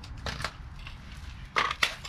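Handling a cordless power tool at the RV's rusted steel basement box: a few light clicks early, then two sharp knocks close together near the end.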